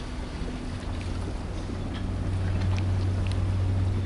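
Low steady hum of a ship, growing louder through the second half over a low rumble.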